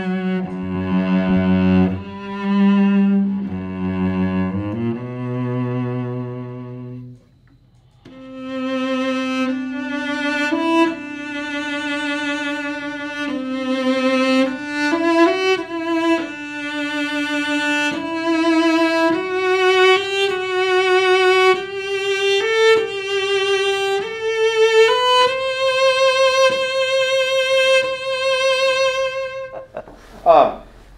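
An Upton cello played solo with the bow: low notes for the first seven seconds, then after a brief break a melody with vibrato that climbs step by step and ends on a long held higher note.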